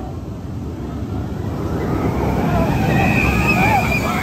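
Bolliger & Mabillard flying coaster train (Manta) rushing past low over the water, its wheels rumbling on the steel track and growing louder over the last two seconds, with riders' screams over it.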